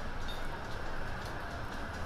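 Steady city street ambience: an even, low hum of urban background noise, with no single sound standing out.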